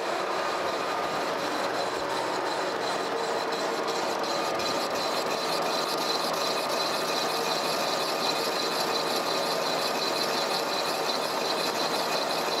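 Horizontal boring mill's boring bar cutting a stoker engine cylinder bore on its final pass to size: a steady, even cutting and machine-running noise with a few faint steady tones in it.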